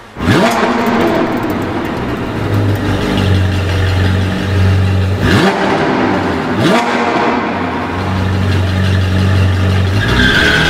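Sports-car engine revving: three quick rising revs, one just after the start and two more around five and a half and seven seconds in, over a steady low engine drone.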